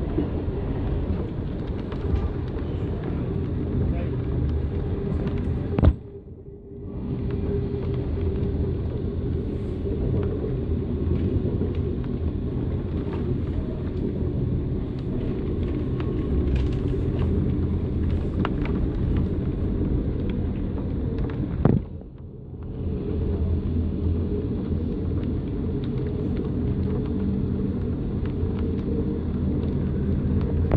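Moving passenger train heard from inside the carriage: a steady low rumble, twice broken by a sharp click and a brief drop in sound, about a quarter and about three quarters of the way through.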